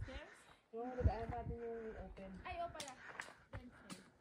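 Quiet talking from a person's voice, too soft for the words to be made out, followed by a few faint clicks near the end.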